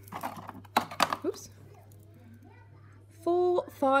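A small cardboard washi-tape box and its plastic packet being handled: a quick run of crinkles and light taps over about the first second and a half, then quiet.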